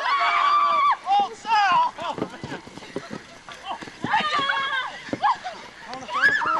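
Several people yelling and laughing in high voices, loudest in the first second and again around four seconds in. Scattered short knocks and thuds from sticks and footfalls sound between the calls.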